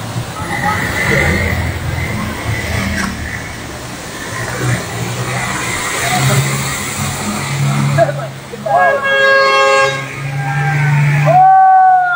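Muddy floodwater from a flash flood rushing down the swollen waterfall and across the road, with a crowd's voices over it. About nine seconds in a vehicle horn honks for a second or so, and near the end people shout.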